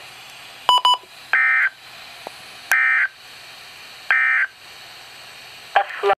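A weather alert radio's speaker plays three short, identical buzzy data bursts about 1.4 seconds apart: the SAME end-of-message tones that close an Emergency Alert System broadcast. Just before them the radio gives two quick button beeps, and a further loud sound starts near the end.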